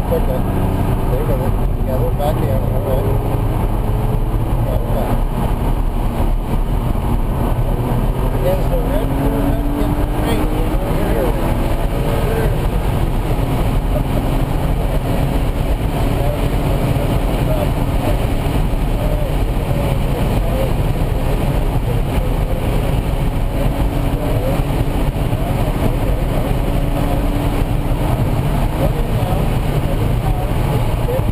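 BMW Z4 M Coupe's 3.2-litre straight-six running hard on a track lap, heard from inside the cabin, its pitch rising and falling with the revs over a steady rumble of road and wind noise.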